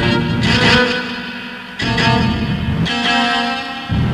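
Cello tuned deliberately out of true, playing a slow run of notes that clash, a new note starting roughly every second.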